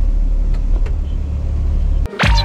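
Steady low rumble of a small sky capsule rail car running slowly along its elevated track, heard from inside the cabin, with a couple of faint clicks.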